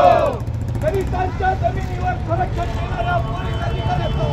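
Several people in a crowd talking, over a steady low rumble of road traffic.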